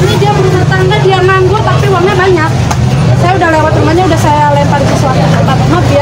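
A woman talking in a high, raised voice among other voices, over a steady low rumble.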